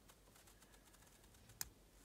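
A single sharp little click about one and a half seconds in, otherwise near silence: disc three of a Baton disc detainer padlock setting as it is rotated with a Sparrows disc detainer pick.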